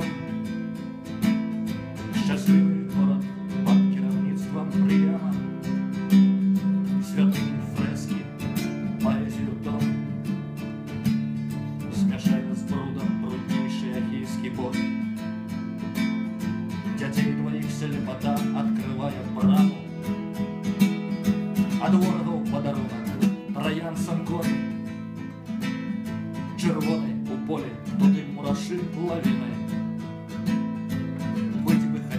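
Acoustic guitar strummed in a steady rhythm of repeated chords.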